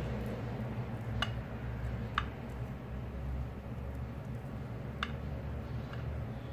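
Knife cutting set milk barfi in a glass baking dish, the blade giving three light clicks against the glass, over a steady low hum.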